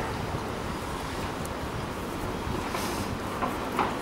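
Steady rushing noise of wind blowing across the camera microphone on an exposed height.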